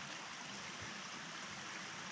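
Soft, steady rush of running water from a small stream, even and unbroken.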